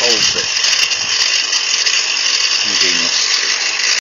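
An SDS drill working as the drive motor of a pig-roast rotisserie spit, running with a steady high-pitched whir as it turns the spit through a chain drive. Short bits of voice come over it at the start and again near three seconds.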